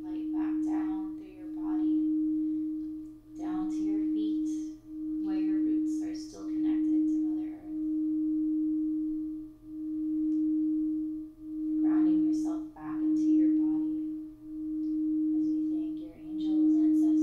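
Singing bowl ringing with a pure, steady tone that swells and fades about every second and a half, with softer, higher sounds coming and going over it.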